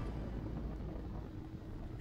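Motorcycle running along a gravel road, heard from on the bike: a steady low engine and road rumble with some wind noise, easing a little in the second half.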